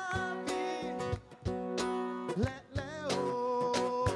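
Live sertanejo song: a male voice singing over strummed acoustic guitar and accordion, with regular percussion hits.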